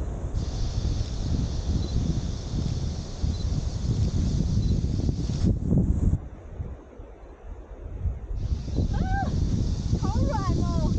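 Wind buffeting the microphone as a steady low rumble. It eases for about two seconds past the middle, then returns.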